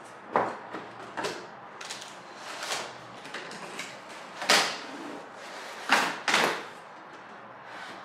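Cardboard packaging being handled: a box's flaps opened and its cardboard insert tray slid up and out, in a series of short scrapes and rustles, the loudest about halfway through and a pair close together about six seconds in.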